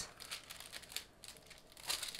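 Thin foil-quill transfer foil sheet crinkling as it is peeled back off the foiled cardstock: soft rustles, with a louder one near the end.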